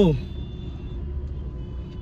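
Steady low rumble of a car heard from inside its cabin, with faint thin high tones near the end.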